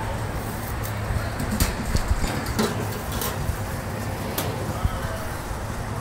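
Indistinct background voices over a steady low hum, with scattered light clicks and knocks.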